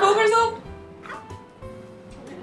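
A short, high whining cry in the first half second, then quieter talk over background music.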